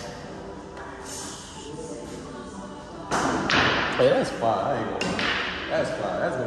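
Quiet talk, then about three seconds in a thud and loud male voices shouting and exclaiming, which carry on to the end.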